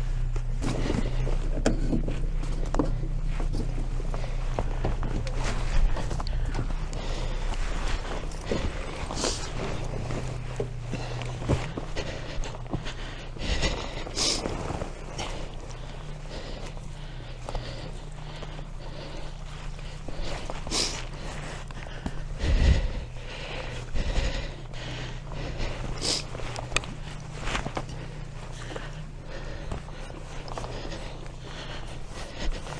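Footsteps and rustling through low shrubs on a rocky shore, with scattered knocks and a heavier thump about three-quarters of the way through, growing fainter over the first half, over a steady low hum.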